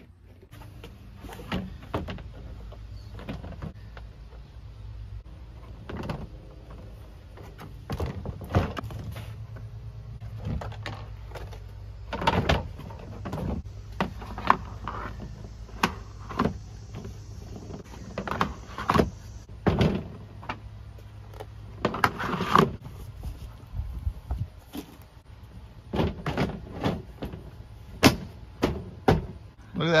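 Hard plastic panels of a compost bin knocking and clicking as they are pressed together and bolted, in irregular sharp knocks. A steady low hum runs underneath for most of the time and stops well before the end.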